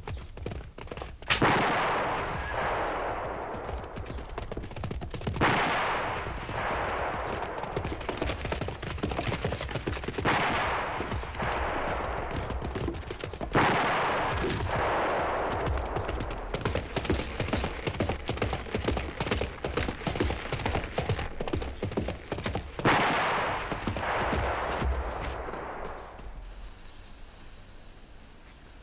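Battle sound effects from a Western film soundtrack: dense, rapid gunfire crackling almost without a break, with loud surges about a second in, at about five and a half seconds, near fourteen seconds and around twenty-three seconds, dying down near the end.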